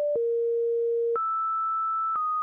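A tune of plain electronic beep tones, one steady tone at a time like telephone tones. A low tone steps slightly lower just after the start, then jumps to a much higher tone about a second in, with a faint click at each change.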